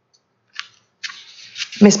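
Half a second of silence, then a short scratchy rustle and a soft hiss of room noise that builds until a woman begins speaking near the end.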